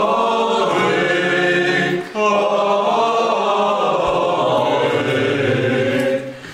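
Choral music: a choir singing long, held chant-like phrases, with a short break between phrases about two seconds in.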